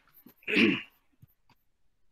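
A man clears his throat once, a short burst about half a second in, followed by a couple of faint clicks.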